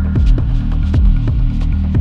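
Hypnotic deep techno track: a steady kick drum about twice a second over a deep, throbbing bass drone, with faint high percussive ticks.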